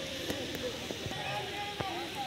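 Distant voices of players and onlookers calling across a hockey pitch, faint and steady, with a couple of thin sharp clicks.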